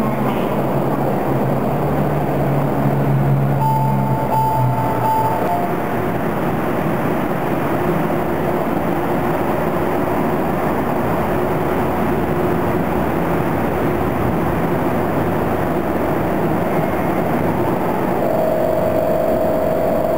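Osaka Monorail train running: a steady rumble, with a brief whining tone about four seconds in and another starting near the end.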